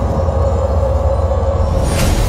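Dark cinematic intro sound effect: a loud, deep rumble under a steady held tone, building, with a brighter rush starting right at the end.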